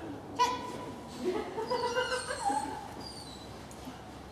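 A dog barking: one sharp, high-pitched yip about half a second in, then a string of pitched yelping cries rising and falling that die away by about three seconds in.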